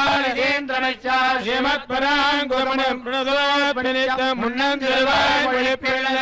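Male priests chanting verses together into microphones, on a steady reciting note with short breaks between phrases.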